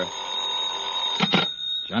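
Telephone bell sound effect ringing in an old radio drama. It rings for about a second, stops, and a short clatter follows as the call is answered.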